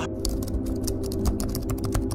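A rapid, irregular run of sharp clicks, like keys being typed, over a low sustained music drone.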